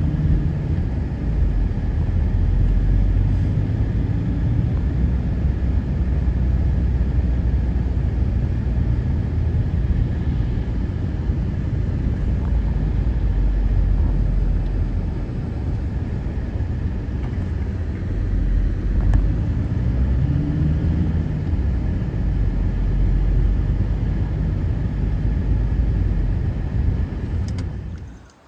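Car cabin noise while driving: a steady low rumble of engine and road noise heard from inside the car.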